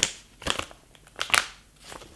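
Sheet mask sachet crinkling as it is handled, in a few short rustles.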